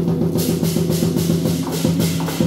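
Lion dance percussion: a large drum beaten under clashing cymbals. The cymbals come in about half a second in and keep up a quick, even rhythm.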